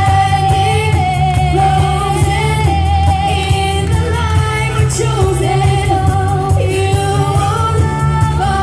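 Loud pop song with singing and a heavy bass line, played over the stage speakers.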